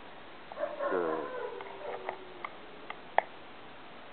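A dog whining: a wavering cry about a second in that falls in pitch and trails off, followed by a few sharp clicks.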